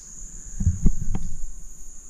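Insects trilling steadily in the woods, a constant high-pitched chorus. A few low thumps come about halfway through.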